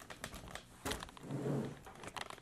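Handling noise: faint rustling and scattered clicks as a hand-held camera is moved, with a brief low murmured hum about one and a half seconds in.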